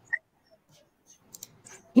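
A few short, faint clicks, the sharpest one just after the start, then speech begins at the very end.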